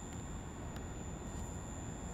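Faint background noise with a low rumble and a thin, steady high-pitched electronic whine.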